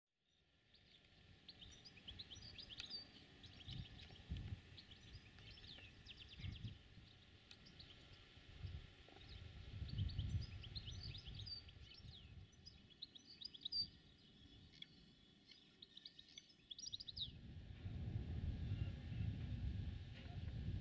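Small birds chirping and twittering over gusts of wind on the microphone. About three seconds before the end the chirping stops and the steady low rumble of a diesel locomotive's engine comes in.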